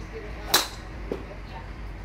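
A golf driver striking a ball off a driving-range mat: one sharp crack about half a second in.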